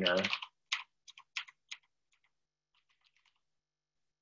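Typing on a computer keyboard: about half a dozen keystrokes at an uneven pace, entering words into form fields, then a few fainter keystrokes about three seconds in.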